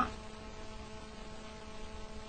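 Steady electrical mains hum made of several tones, with a faint hiss underneath, from the microphone and recording chain.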